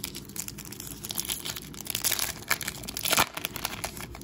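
Silver foil trading-card pack wrapper being torn open and crinkled by hand: a dense run of crackling that is loudest about three seconds in.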